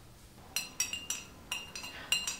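A spoon stirring coffee in a ceramic mug, clinking against the inside in a quick run of light strikes, about three or four a second, starting about half a second in.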